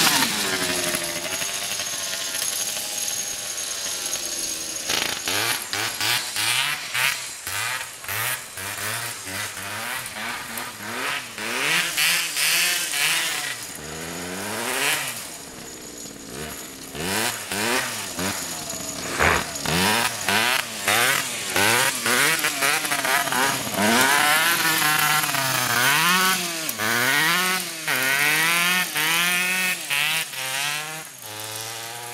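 Homemade go-kart's Suzuki PV 74cc two-stroke engine revving up and down as the kart drives, its pitch rising and falling every second or two.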